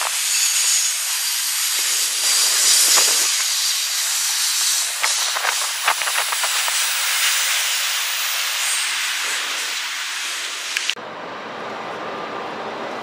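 Double-stack container train rolling past, its steel wheels on the rails giving a loud, steady high-pitched hiss with scattered sharp clicks and clanks. About a second before the end it cuts off abruptly to a quieter, steady background noise.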